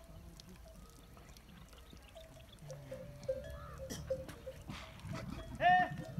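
Camel bells on a herd of camels ringing on and off in a steady tone, over low calls from the camels. Near the end comes one short, loud, higher call.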